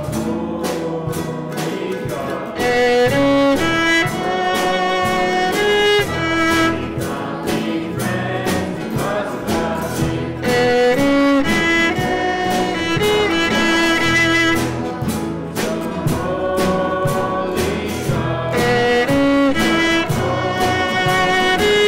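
Voices singing a worship song with instrumental accompaniment. It gets louder about two and a half seconds in.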